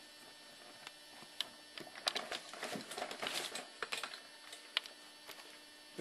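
Faint handling noise, irregular light clicks and rustling, thickest about two to four seconds in, over a steady low electrical hum.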